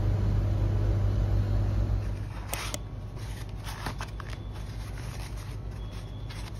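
Handling noise from ingredients and a cardboard egg carton being picked up: several sharp clicks and short rustles over a steady low hum, which gets quieter about two seconds in.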